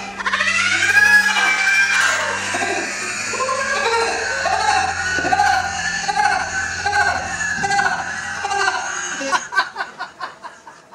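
A woman screaming in fright as she is startled, then a long run of shrieks and laughter, with music playing underneath; short bursts of laughter near the end.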